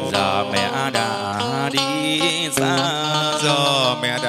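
Vietnamese funeral band (nhạc hiếu) music: a pitched melody line that wavers with vibrato and slides between notes, over a beat, in the pause between lines of a sung lament.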